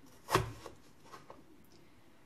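Crinkle-cut blade pressed down by hand through stacked potato slices onto a wooden cutting board: one sharp knock about a third of a second in, then a few faint ticks.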